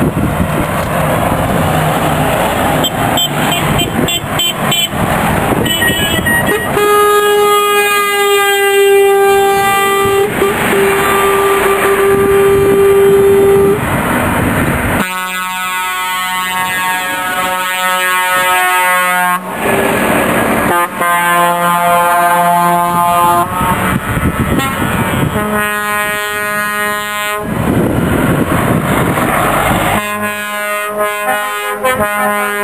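A convoy of lorries driving past close by, with engine and tyre noise, and truck air horns sounded again and again: one long steady blast from about seven to fourteen seconds in, then several shorter blasts at different pitches.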